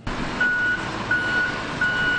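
Heavy-equipment backup alarm beeping at a steady pace, a single tone about one and a half times a second. It starts about half a second in and sounds over the continuous noise of machinery loading road salt into a snowplow truck.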